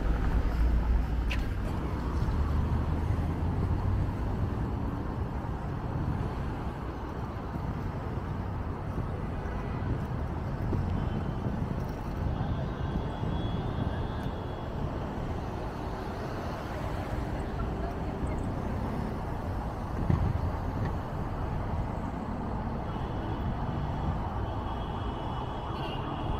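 City street ambience: a car drives past close by in the first couple of seconds, then a steady hum of traffic with voices in the background.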